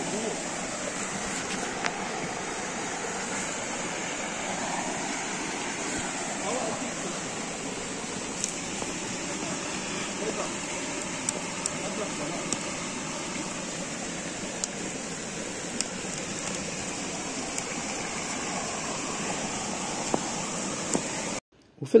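Steady rush of flowing stream water, with occasional sharp crackles from a burning Swedish fire log (an upright split log burning from its centre).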